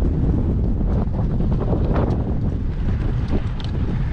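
Wind buffeting the microphone of a camera moving along with runners: a steady, loud low rumble.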